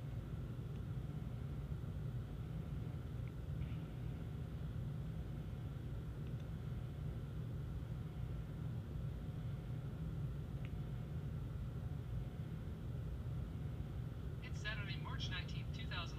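Steady low room hum. Near the end, a man's voice starts playing from the phone's small speaker as the YouTube video on the Motorola Droid X begins.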